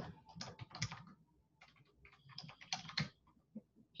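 Faint typing on a computer keyboard: two short runs of keystrokes, entering a chart symbol into a search box.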